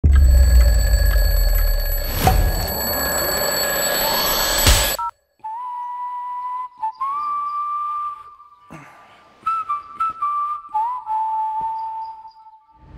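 A loud cinematic logo sting with a deep rumble and rising sweeps, cut off abruptly about five seconds in. After a moment of silence a smartphone alarm plays a simple electronic tone of held notes that step up and down in pitch.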